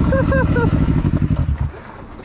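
KTM enduro dirt bike engine running at low revs close to the rider, a dense low rapid pulsing that stops abruptly near the end.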